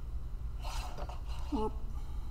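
Steady low hum with a man's breath about half a second in and a short voiced syllable near the end.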